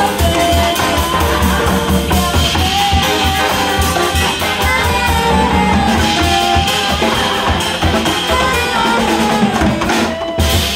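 Live big band jazz: a horn section of saxophones, trumpets and trombone playing over a steady drum kit beat, with piano and guitar.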